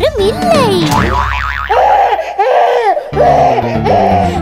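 Cartoon toddler's wordless vocal sounds: a wavering, gliding whine in the first second, then several drawn-out wails, with steady children's background music under them.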